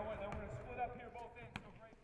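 Faint gym sound from a basketball practice: a ball bouncing on the court with faint echoing voices, fading out near the end.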